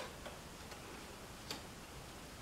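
A few faint, irregular clicks of cards being handled and laid on a tabletop.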